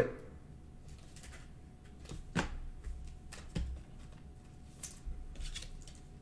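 Faint handling of trading cards and clear plastic pack wrapping: a few light clicks and taps, the sharpest about two and a half seconds in and another about a second later, over a faint steady hum.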